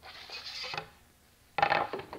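A wooden MDF jig being handled on a table saw's cast-iron top with the saw switched off: a short scrape of wood sliding, then a sudden louder clatter as the jig is set down against the fence about a second and a half in.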